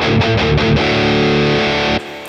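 Distorted electric guitar through a BOSS Katana 100 MkII amp on its lead preset: a few quick picked notes, then a chord left ringing that is cut off suddenly at the end.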